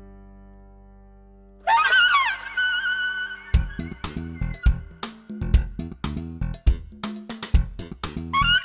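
Semi-atonal jazz-funk music: a held keyboard chord fades away, then a saxophone comes in loudly with wavering, bending notes a little under two seconds in. A drum beat with bass joins about halfway through.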